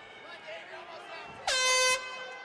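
End-of-round horn in an MMA cage, one loud steady note that starts abruptly about one and a half seconds in and cuts off sharply after about half a second, signalling the end of the round. Crowd shouting runs beneath it.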